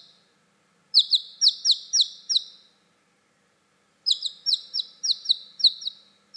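A newly hatched chick cheeping: two quick runs of sharp, high peeps, the first starting about a second in and the second about four seconds in.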